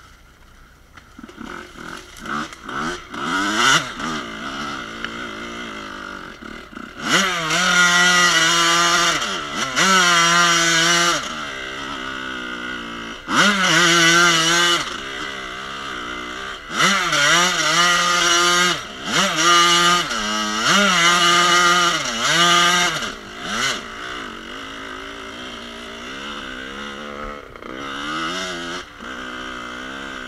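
1986 Kawasaki KX125's two-stroke single-cylinder engine ridden hard. It revs in repeated loud bursts, its pitch climbing and falling back with each burst of throttle, then runs steadier and lower near the end.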